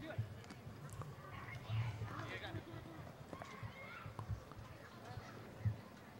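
Faint, distant voices of players and spectators calling out across an open soccer stadium, with a few soft knocks.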